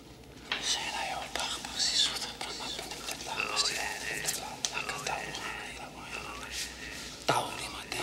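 A quiet whispered voice that starts about half a second in, with little or no music under it.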